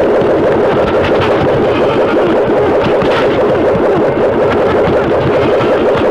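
Loud, steady droning noise from a horror film's soundtrack, a dense rumbling sound effect with no speech over it.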